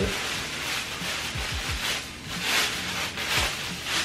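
Thin plastic bag crinkling as it is handled and opened, with a few soft low thumps of handling.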